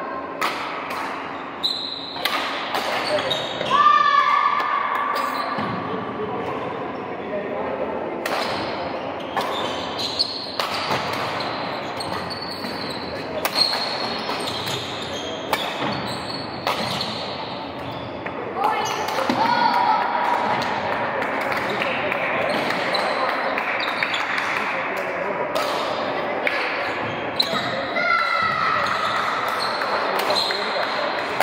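Badminton rally on a wooden court in a large hall: sharp cracks of racquets hitting the shuttlecock, footfalls, and a few brief squeaks of shoes on the wooden floor, with voices in the background.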